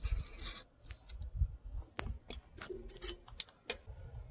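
Steel tongs scraping and clicking against a ceramic cupel and the furnace floor as the hot cupel is lifted out of an electric cupelling furnace and set down. There is a brief scrape at the start, then a string of sharp clicks in the second half.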